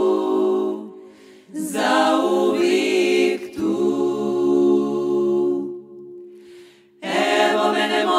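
Women's klapa singing a cappella in close harmony: held chords in long phrases, dying away briefly about a second in and again near seven seconds before the next phrase begins.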